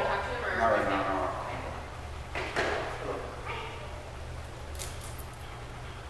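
Indistinct voices for the first second and a half and again briefly about three seconds in, with a single sharp knock about two and a half seconds in, over a steady low hum.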